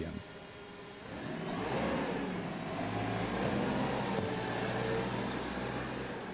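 Forklift engine running and picking up speed as the forklift drives off. The engine grows louder about a second in and then holds steady.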